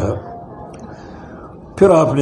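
A man lecturing in Urdu finishes a phrase at the start. Then comes a pause of under two seconds with only faint background hiss, and his voice starts again near the end.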